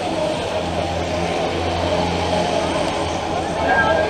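Street crowd murmuring and talking, with a low steady engine drone underneath that grows stronger in the middle and eases off near the end.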